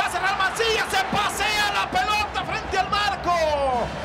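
A male Spanish-language football commentator talking quickly and continuously, drawing out one word into a long falling call near the end.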